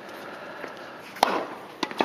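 Tennis racket striking a ball: one loud, sharp pop a little past a second in, followed by fainter knocks of the ball near the end.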